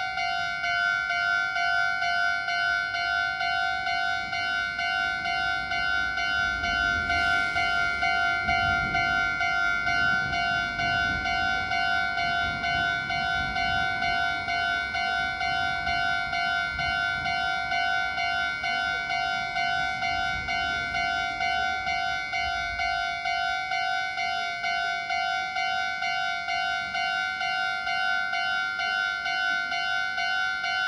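Electronic Japanese railway level-crossing alarm ringing continuously in a rapid, even two-tone pulse, warning of an approaching train. A train's low rumble comes in about seven seconds in and fades out past the twenty-second mark.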